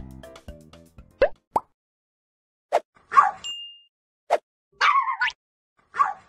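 Background music ending about a second in, then a run of short cartoon-style pop sound effects, two of them quick rising blips, with a brief steady high beep in the middle. A short yappy, dog-like call comes near the end.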